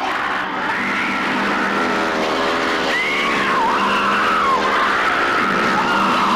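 High squealing sounds that glide up and down over a steady low hum, starting abruptly after silence at the start of an album track.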